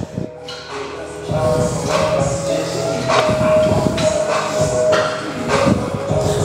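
Music with held tones and a steady percussive beat.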